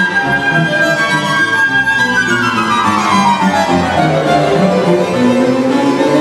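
String orchestra of violins and cellos playing a concerto: a high note is held for about two seconds, then the melody falls away in a descending run.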